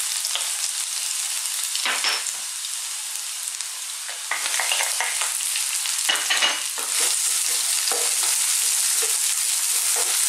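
Chopped garlic and ginger sizzling in very hot sunflower oil in a non-stick wok over high heat. The sizzle steps up a few seconds in as sliced onions go into the oil.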